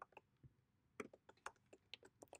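Faint typing on a computer keyboard: a few keystrokes at the start, then a quicker run of keystrokes from about a second in.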